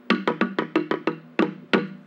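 Taino mayohuacán, a carved wooden log slit drum, struck on its other side with rubber-tipped sticks. A quick run of about seven low-pitched wooden strokes is followed by two single strokes.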